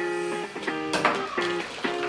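Background music: strummed guitar chords, a new strum several times in the two seconds.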